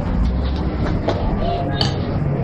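Steady loud rumbling of a busy restaurant kitchen, with a couple of light knocks.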